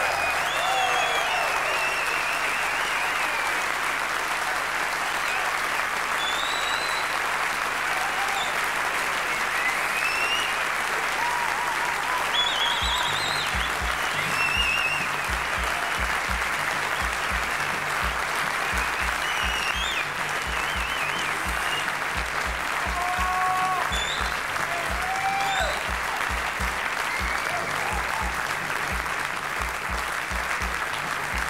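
Large concert audience applauding steadily, with scattered whistles and shouts of approval. About halfway through, a low pulsing thump starts beneath the clapping.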